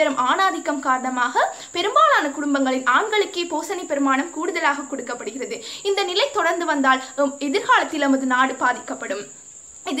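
A young woman speaking, with a steady high-pitched chirring of crickets behind her throughout; her speech stops shortly before the end, leaving the crickets alone.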